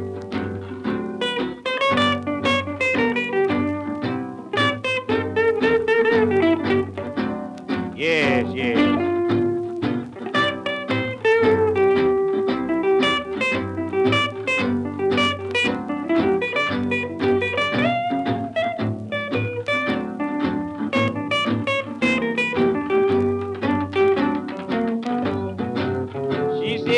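Instrumental break in a 1930s blues recording: blues harmonica playing a lead with bending notes over plucked acoustic guitar accompaniment.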